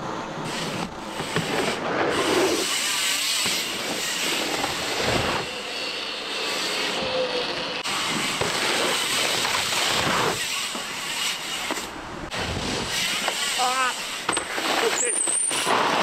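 Indistinct voices over a steady outdoor noise, with no clear words.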